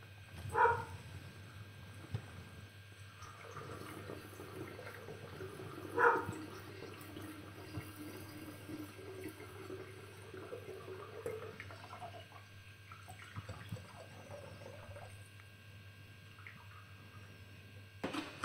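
Sodium hydroxide solution poured from a glass beaker through a glass funnel into a flask, a faint trickle of liquid. Two brief louder sounds stand out, one just after the start and one about six seconds in.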